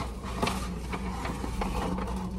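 Faint rustling and a light tick as a paper takeout bag is handled, over a steady low hum inside a car.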